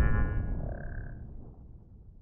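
The fading tail of an outro sound effect: a low rumble and a few ringing tones that die away.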